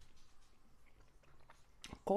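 Faint chewing of a mouthful of soft waffle with Nutella, with small scattered mouth clicks and a sharper click near the end.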